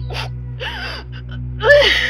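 A woman sobbing: a sharp gasping breath, then wavering crying wails that rise and fall in pitch, the loudest near the end.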